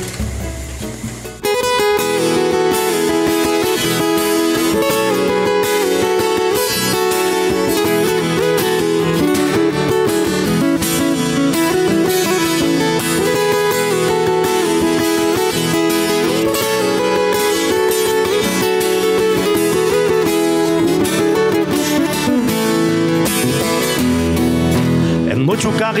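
Acoustic guitar playing the instrumental introduction of a song, starting about a second and a half in.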